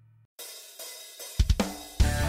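A short gap, then a drum-kit intro to a children's song: a cymbal crash about half a second in that rings and fades, then a quick run of three or four drum hits near the end.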